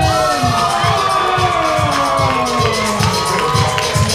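A hip-hop beat with a steady kick drum plays, and a crowd cheers over it.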